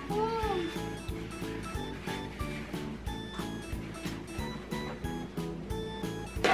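Upbeat background music with a steady beat, with a girl's short 'mm' that rises and falls in pitch just after the start.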